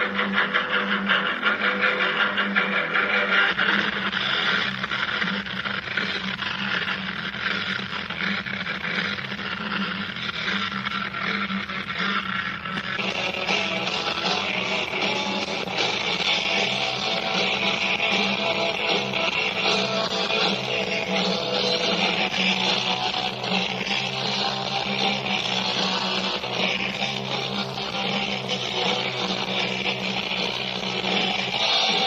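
Rock band playing live, guitars to the fore, on a recording with dull, cut-off highs; the sound of the band changes about thirteen seconds in.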